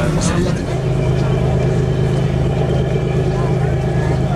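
Low, steady engine drone heard inside a passenger vehicle's cabin, settling into a constant hum about half a second in.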